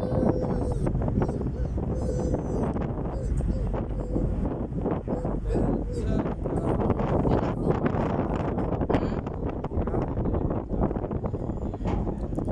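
Wind buffeting the microphone on a ferry's open deck over a steady low rumble from the moving boat, with indistinct voices in the background.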